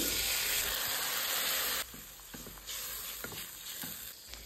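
Food frying in hot oil in a pan: a steady sizzle that drops suddenly to a quieter sizzle about two seconds in, with a few light clicks of stirring after that.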